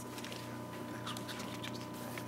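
Faint rustling of paper pages, a few short rustles about halfway through, over a steady low electrical hum with a thin high tone.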